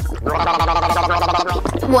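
A woman gargling with her head tilted back, a throaty warbling gargle lasting about a second, over background music with a steady bass line.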